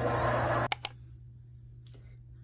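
A noisy burst with a voice in it stops abruptly, then come two sharp clicks in quick succession, about a tenth of a second apart.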